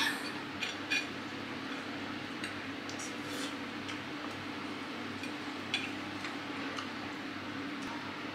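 A few scattered light clicks of forks and spoons against plates as people eat, over a steady low hum.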